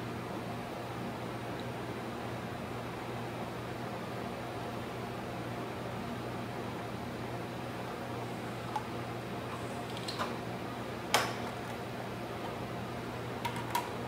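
Steady hum of a lab's fan or ventilation with a constant low mains-like drone. Over it come a few short, light clicks of a micropipette and plastic tubes being handled during pipetting, the loudest about three-quarters of the way through.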